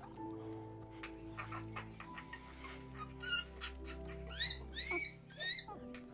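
Sustained, quiet orchestral film score. Over it, an infant ape gives high-pitched cries in the second half: one about three seconds in, then four close together, each rising then falling in pitch. These cries are the loudest sound.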